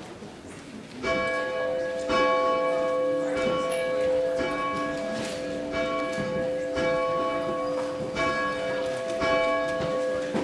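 One church bell tolling, starting about a second in and struck roughly once a second, each stroke ringing on into the next.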